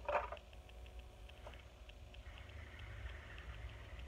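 Quiet room tone: a steady low hum with a faint, even ticking about four times a second and a light hiss in the second half.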